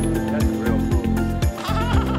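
Background music with a steady beat; about a second and a half in, a beluga whale starts a wavering, warbling call, the beluga's so-called laugh.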